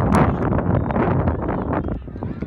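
Wind blowing across the microphone, a loud rush of noise heaviest in the low end.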